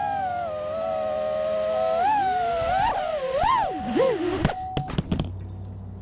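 FPV quadcopter's brushless motors whining, the pitch swooping up and down with the throttle. About four and a half seconds in the whine drops sharply and cuts off as the quad lands, with a few knocks.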